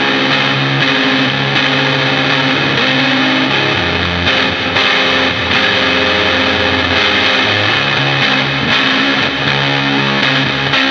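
Electric guitar played through a multi-effect pedal with its fuzz section just switched on. It gives sustained distorted chords washed in reverb, with a new chord struck about four seconds in.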